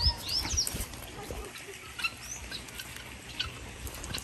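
Birds chirping: a cluster of short, high, arching calls in the first second, then scattered single chirps, over a faint outdoor background.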